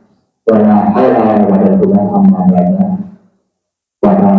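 A man's voice chanting a phrase at a steady, held pitch into a microphone over a loudspeaker. It starts about half a second in and dies away after about three seconds.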